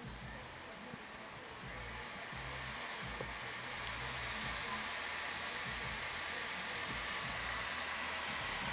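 Toshiba Satellite laptop whirring as it restarts and boots from the Windows 7 install disc: a steady hiss that grows slowly louder.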